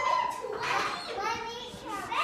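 Young children's voices talking, the words not made out.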